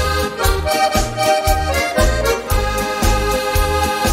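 Instrumental break of a polka-style song: accordion playing sustained melody chords over a steady, bouncing oom-pah bass beat.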